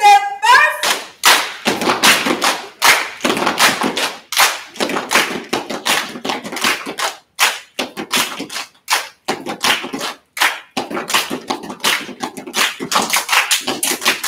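A step team stepping: sharp hand claps and stomps in a quick, uneven rhythm of a few strikes a second.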